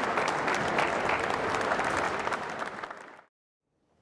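Theatre audience applauding, a dense patter of many hands clapping that thins out and then cuts off suddenly about three seconds in.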